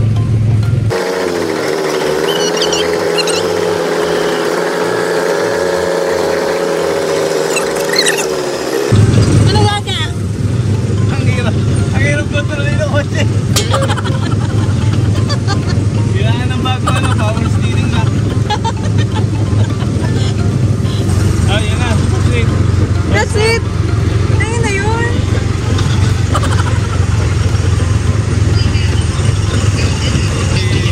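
Small gasoline engine of a Tomorrowland Speedway ride car running steadily, a low rumble with wind and road noise, heard from the driver's seat. For the first several seconds a different steady, wavering hum takes the place of the rumble.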